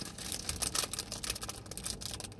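Rapid, irregular small clicks and rustles from something being handled close to the phone's microphone.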